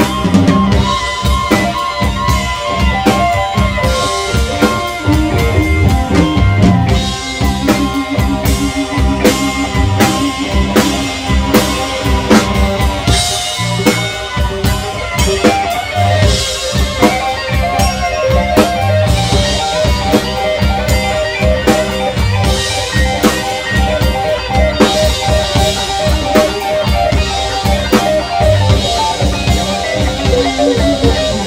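Live band playing an instrumental number: electric guitars, electric bass and keyboard over a Sonor drum kit keeping a steady beat.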